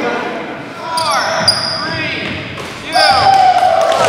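Pickup basketball game on a gym's hardwood court: a ball bouncing and sneakers squeaking, with players' voices echoing in the hall, and a loud shout about three seconds in.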